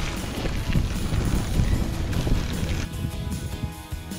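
Wind buffeting the microphone of a camera riding along a dirt track on a bicycle, under background music. About three seconds in the wind rumble cuts off and only the music is left.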